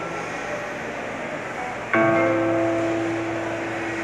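Acoustic guitar chord ringing and dying away, then another chord strummed about two seconds in and left to ring out.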